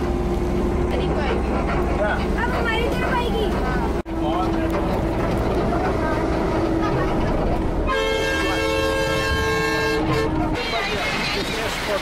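Steady rumble of a bus on the move, with people talking in the background. About eight seconds in, a vehicle horn sounds one long blast of about two and a half seconds.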